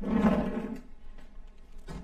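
A short growling roar, pitched like a voice, lasting under a second, then a light knock near the end.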